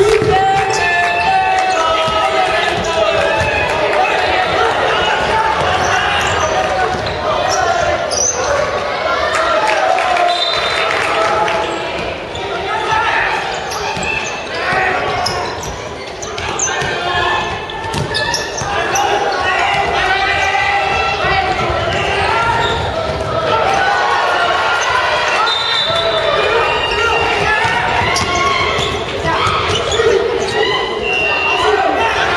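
Basketball game sounds in a large gymnasium: the ball bouncing on the wooden court, with players and the bench shouting almost throughout.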